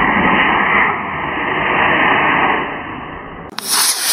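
Estes A8-3 black-powder model rocket motor igniting and burning as an Estes Baby Bertha lifts off: a dull, steady rushing hiss that cuts off suddenly about three and a half seconds in.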